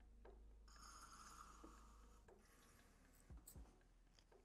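Very faint felt-tip marker stroking on paper: a soft scratchy stroke from about a second in, lasting a second and a half, then a few light ticks near the end. Otherwise near silence.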